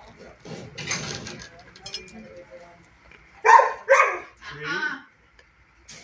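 A dog gives three loud vocalizations about three and a half seconds in: two short barks, then a longer, wavering yowl. A softer rustle comes about a second in.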